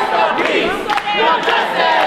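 Crowd of protesters shouting and chanting together, many voices overlapping in a loud, unbroken din.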